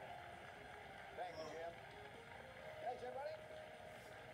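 Faint, muffled television game-show audio played through a phone's small speaker: brief snatches of voice over a steady hiss.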